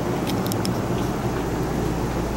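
Steady low mechanical hum with a rushing noise, as of running machinery, with a few faint light clicks about half a second in.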